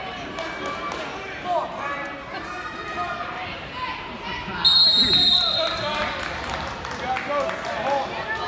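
Background chatter of voices in a gym, cut by one short, shrill blast of a referee's whistle a little past the middle.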